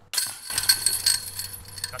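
A disc golf putt hitting the metal chains of the basket: a sudden clash of chains, then jingling and rattling that rings on for about a second and a half as the disc drops into the basket for a two.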